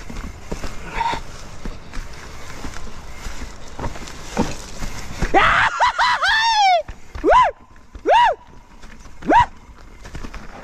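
A mountain bike rattles and clatters over rocks and dry leaves on a steep rocky descent. About halfway through, a rider's voice gives one long shout, then three short shouts about a second apart.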